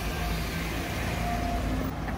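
Steady street noise: the low rumble of a motor vehicle running close by, with no sudden events.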